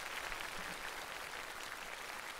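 Audience applauding: a steady round of clapping from many people.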